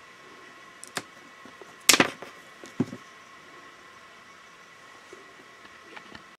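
Hand cable cutters snipping through coiled-steel bicycle brake cable housing: one sharp snap about two seconds in, after a small click, then a lighter knock.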